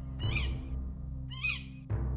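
A bird of prey crying twice, about a second apart, each cry lasting about half a second and falling in pitch, over a low, sustained music drone.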